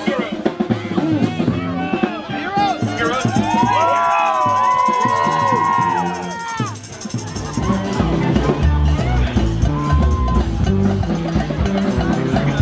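A crowd singing and shouting along with a New Orleans jazz band in a second-line street parade. About seven seconds in, the sound changes to the band's drums keeping a steady beat under crowd noise.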